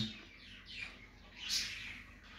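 Pet birds chirping faintly: a few short high chirps, the clearest about one and a half seconds in.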